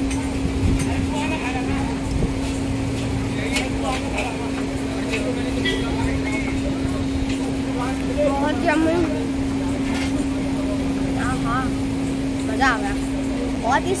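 Eatery ambience: people's voices in the background over a steady low hum, with a few short clicks scattered through it. A voice comes up more clearly about eight seconds in and again near the end.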